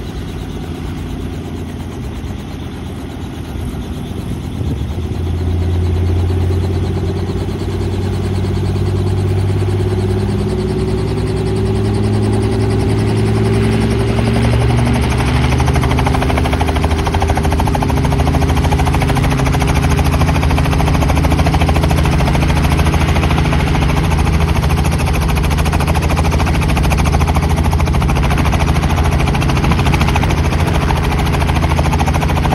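Small helicopter running on the ground with its main rotor turning. The engine and rotor sound grows louder a few seconds in and shifts in pitch as the helicopter spools up, then runs steadily.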